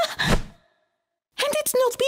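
A cartoon character's voice: a breathy sigh, then total silence for most of a second, then a short pitched vocal sound that wavers up and down.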